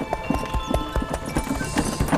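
Horse's hooves clip-clopping in a quick, uneven run as it pulls a cart, over background music.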